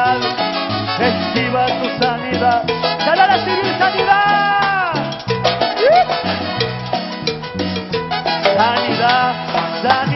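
Live band playing upbeat Latin-style worship music with a steady beat, with no singing over it.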